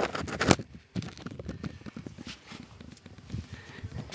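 A sharp clack as the camera is set down on the concrete floor about half a second in, then a run of light, irregular clicks and scuffs.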